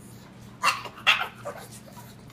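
A pug barking for his breakfast: two short barks about half a second apart, then a softer third.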